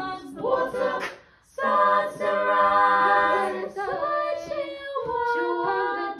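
All-female a cappella group singing sustained chords in close harmony, with a brief silence about a second and a half in before the full chord comes back in.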